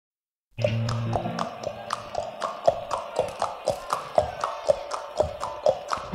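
Live rock band opening a song: after half a second of silence, a short low chord, then a steady percussive knocking beat, about four knocks a second.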